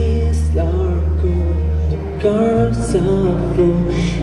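A live acoustic band playing: strummed acoustic guitars over a bass guitar holding a low note, then moving, with a voice singing the melody.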